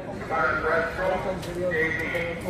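Indistinct chatter of several teenagers talking at once.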